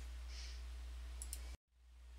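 Steady low electrical hum under faint room tone from the narration recording, with a couple of faint clicks a little over a second in. Near the end the sound drops out to dead silence for a moment, an edit in the audio, before the hum returns.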